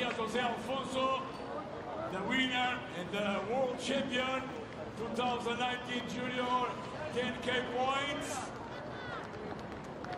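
A man talking almost without pause, over a light background hiss.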